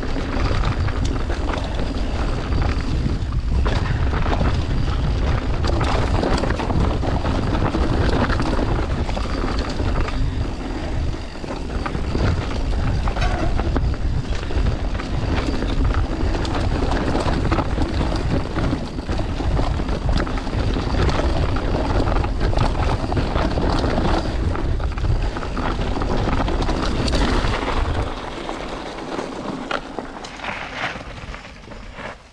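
Mountain bike descending a forest dirt trail: wind buffeting the helmet camera's microphone over tyre roar and rattling knocks from the bike over roots and stones. The noise drops away suddenly near the end.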